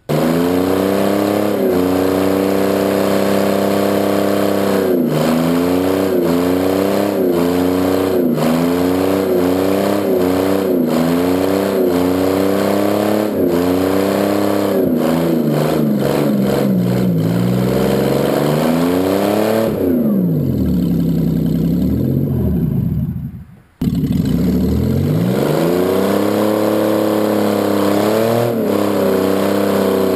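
Mercury Sable wagon's engine revving hard during a front-wheel-drive burnout, its pitch wavering up and down about once a second. About twenty seconds in the revs fall away and the sound dies off almost to nothing. It then comes back suddenly at full level and climbs again to a high, steady rev.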